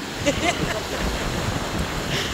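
Ocean surf washing up onto a sandy beach, with wind noise on the microphone.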